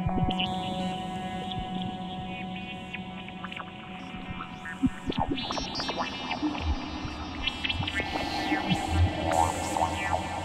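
ASM Hydrasynth Desktop synthesizer playing a slow ambient patch: layered sustained tones played on its pads. A deep low drone comes in about two-thirds of the way through, and a hissy upper layer joins near the end.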